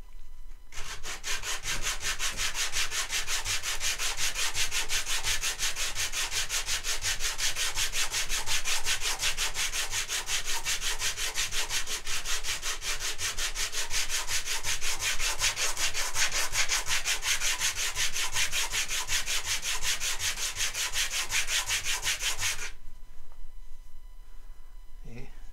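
A small wooden piece sanded by hand on sandpaper glued to a flat board, rubbed back and forth in quick, even strokes to flatten its uneven glued side. It starts about a second in and stops about a second before the end.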